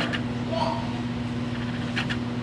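A steady low machine hum in the room, with a faint click just after the start.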